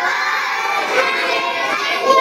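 A group of children's voices reciting together in a steady chorus, repeating the spelling of Arabic letters after the teacher.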